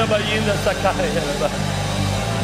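An excited voice in a worship service, over steady, held low musical chords.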